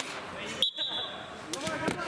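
A referee's whistle blown once, a short high blast about half a second in, signalling the kick-off. A football is then struck, with a couple of sharp knocks near the end, over background voices.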